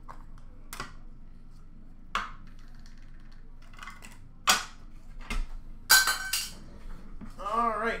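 Rigid plastic card holders and cards being handled and set down on a glass counter: a handful of sharp, separate plastic clacks, the loudest about six seconds in.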